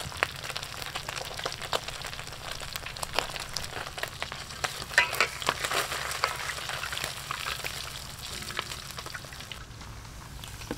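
Fish pieces deep-frying in hot oil in a wok, a steady sizzle full of irregular crackles and pops, with a cluster of louder pops about halfway through. The sizzle drops away near the end.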